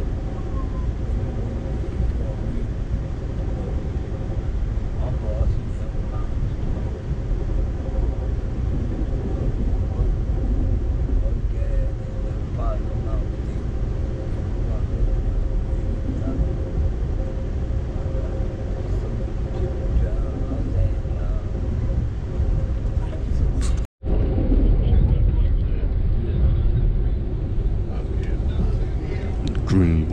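Steady low rumble of an Amtrak passenger train running at speed, heard from inside the coach, with a faint steady hum above it. The sound cuts out for a split second about two-thirds of the way through.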